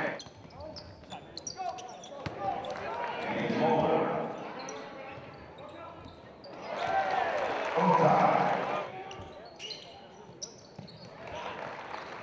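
Live game sound in a basketball gym: voices of players and a small crowd rise twice, louder around the middle and again a few seconds later, over a basketball bouncing on the court and short sharp clicks.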